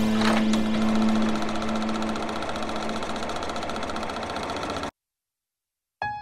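Logo sound effect: a machine-like whirring under a steady held tone, slowly growing quieter and then cutting off abruptly about five seconds in.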